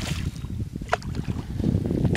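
Wind buffeting the microphone, a steady low rumble, with one short sharp sound about a second in.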